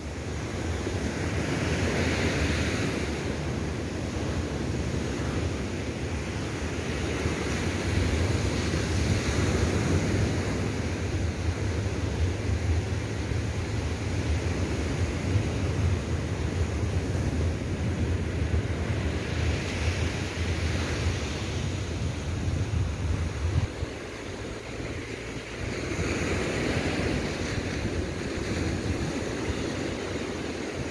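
Surf breaking and washing up on a sandy beach, swelling and fading every several seconds, with wind rumbling on the microphone for most of the time until about three-quarters of the way through.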